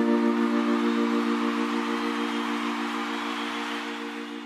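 A live band's last chord held and slowly fading out, with audience applause over it.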